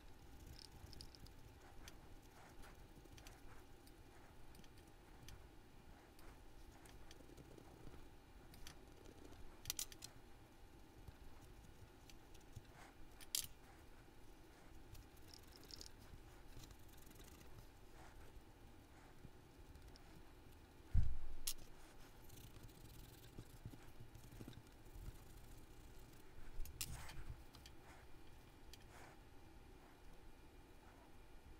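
Faint handling of small brass model-train parts being wiped clean with a rag and paper towel: scattered light clicks and clinks of metal pieces against each other and the workbench, with a dull thump about two-thirds of the way through.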